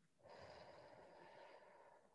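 A woman's single slow, faint breath, drawn out for about one and a half seconds.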